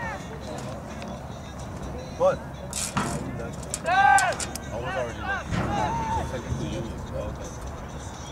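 Several short, loud shouted calls from people at a soccer game, with the loudest about four seconds in and more following over the next two seconds, over steady background noise.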